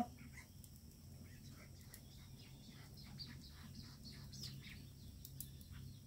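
Faint bird chirps now and then over a low steady hum; otherwise quiet.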